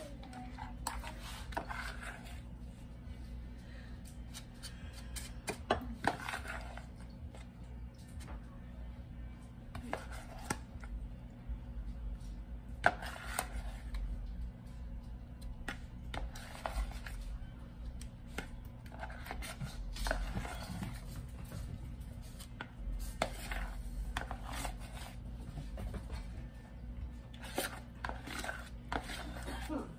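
Scattered knocks, taps and clicks of kitchen utensils and dishes being handled on a counter, some of them sharper and louder, over a steady low hum.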